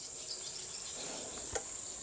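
Steady high-pitched chirring of insects, with faint sizzling of zucchini frying in a pan on an electric hot plate and a single small click about one and a half seconds in.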